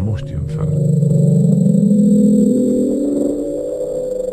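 Hydrophone recording of an unexplained underwater ocean sound, the kind known as the "Bloop": a deep, rumbling tone that rises slowly in pitch, swelling to its loudest about two seconds in.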